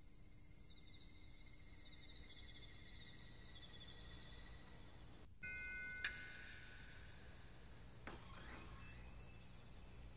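Quiet film soundtrack ambience: a steady low rumble under faint warbling high tones, with a sharp bell-like ding about six seconds in.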